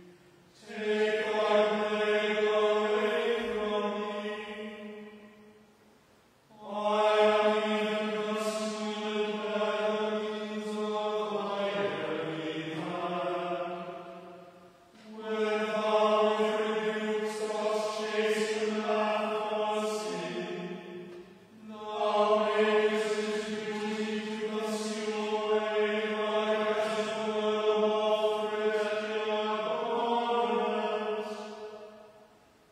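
Voices chanting together in unison, mostly held on one reciting note with a few pitch changes at the ends of lines, in four long phrases with short breaks between them: psalm chanting at a liturgical office.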